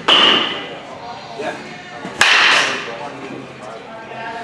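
Baseball bat hitting pitched balls in batting practice: two sharp cracks a little over two seconds apart, one right at the start and one about two seconds in, each trailing off over about half a second in the indoor cage.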